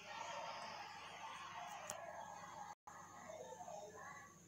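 Taro pieces and spice paste frying faintly in mustard oil in an open pressure cooker, with a metal spatula stirring and scraping through them. The sizzle cuts out for a moment near three seconds in.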